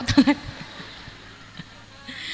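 A woman's voice over the PA system finishing a phrase, then low background noise from the crowd with a few faint, scattered taps.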